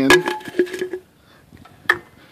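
An empty drink can knocked and clicked against steel as it is set into a hammer-type can-crusher rig. There is a sharp knock at the start with a brief ring, then a second short click near the end.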